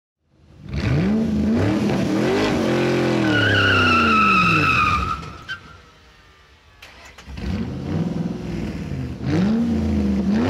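Car engine revving up and down, with a tyre squeal about three to five seconds in. It dies down briefly around six seconds, then revs again, loud again near the end.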